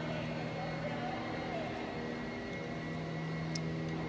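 Steady low hum and hiss of a large hall's room noise, with faint voices in the background.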